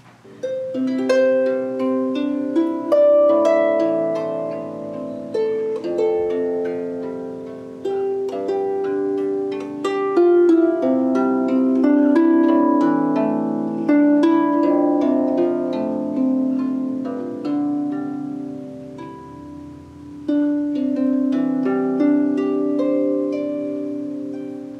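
Marini Made 28-string bass lap harp, tuned to F major, played by hand: plucked melody and chords with the notes ringing on and overlapping. The room is a little bit echoey.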